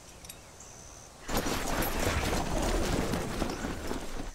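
Boots tramping through tall grass: a loud, dense rustling that starts about a second in, after a quieter stretch of open-field background.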